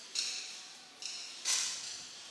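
Sharp reports of 10-metre air rifles being fired in the final, three in all, the loudest about one and a half seconds in. Each fades quickly in the hall's echo.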